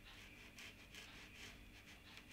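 Near silence: room tone, with the faint rub of a fine paintbrush dabbing on paper now and then.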